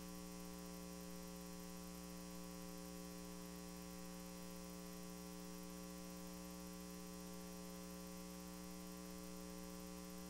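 Faint, steady electrical hum: a stack of unchanging tones with no other sound over it.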